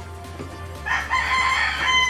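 A rooster crowing once: one long call that starts about a second in and drops in pitch as it ends.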